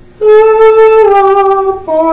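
A warm-up melody of held musical notes stepping down in pitch for pitch-matching: a long note, then a slightly lower one about a second in, then a lower note starting near the end.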